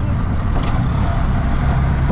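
Steady low rumble of a moving motor vehicle.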